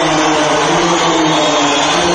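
A large crowd's loud, unbroken roar, with a long held chanting voice carried over the loudspeakers.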